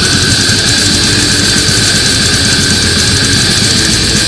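Loud extreme metal music: a dense wall of distorted guitar noise with a steady held high tone over it.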